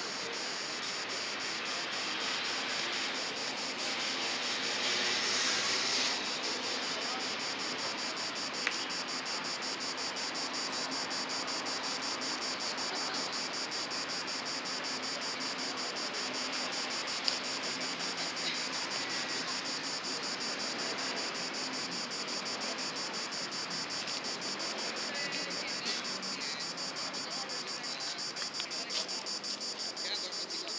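Open-air background noise with distant traffic, under a continuous high, rapidly pulsing chirring. The noise swells for a few seconds early on, and two brief sharp clicks come later.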